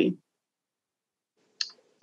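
Near silence in a pause between spoken phrases, broken by one brief click about a second and a half in.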